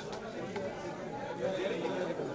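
Indistinct chatter of several people talking at once, with overlapping voices and no one voice standing out.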